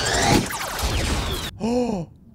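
Film soundtrack of a giant robot's energy-weapon blast: loud, dense crashing with falling, swooshing sweeps, cut off abruptly about one and a half seconds in. Right after the cut, a man's short, gasping 'oh'.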